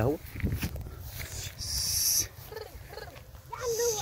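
Pregnant ewes feeding on a heap of dry straw: rustling and snuffling. There are two short, soft bleats in the second half.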